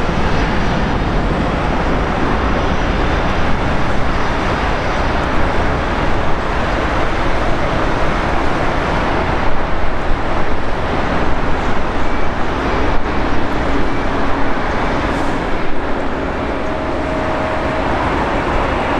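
Jet aircraft engines running at an airport: a steady, loud rushing noise with no clear pitch.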